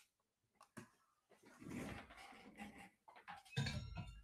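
Faint handling noise: rustling, then a few clicks and knocks near the end as a webcam is handled and turned.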